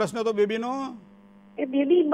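Talk on a phone-in line over a steady electrical mains hum: a single low tone that carries on unchanged through a short pause in the speech about a second in.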